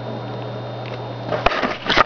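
Plastic laptop cases knocking and rubbing as a white polycarbonate iBook G3 is set down and shifted on top of a black MacBook, with a few short knocks near the end over a steady low hum.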